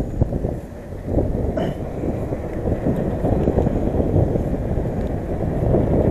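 Mountain bike rolling fast down a paved road: wind buffeting the camera microphone, mixed with tyre rumble. It builds over the first second, then stays loud and rough.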